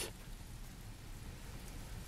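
Hooves of a running wildebeest herd drumming on the ground, a faint, steady patter of many overlapping footfalls.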